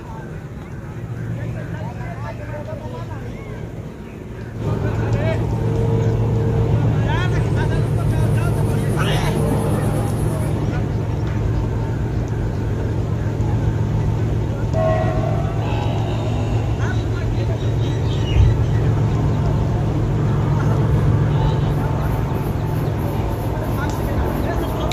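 Voices of cricket players calling out across an open field, over a steady low engine hum that comes in suddenly about four seconds in. A single thud comes about eighteen seconds in.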